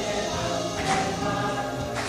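Recorded worship song: several voices singing together in held, wavering notes over instrumental accompaniment.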